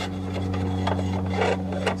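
Aluminium angle bar scraping metal on metal as it is pushed into its bracket on an aluminium ute canopy, with a few light knocks. The angle has warped and binds in the bracket, so it has to be forced in.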